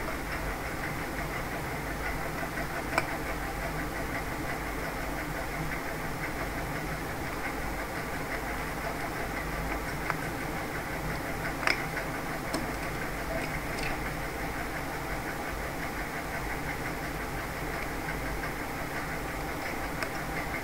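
A steady mechanical hum with a fine, rapid texture, and a few faint plastic clicks scattered through it as a mobile phone's back cover and battery are handled and taken out.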